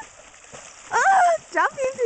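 Short, high-pitched excited vocal cries, about three in the second half, each sliding up and down in pitch.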